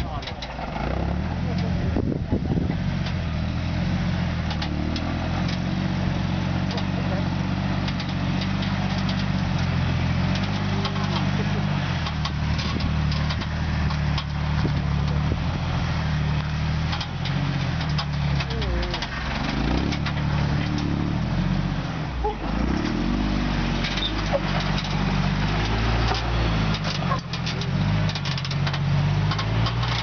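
Jeep Wrangler engine working at low speed as it crawls up steep slickrock, its pitch rising and falling with the throttle, with scattered short knocks and clicks.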